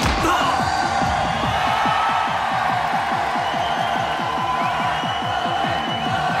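Electronic club dance music with a fast, steady bass beat under held synth notes, opening with a heavy hit.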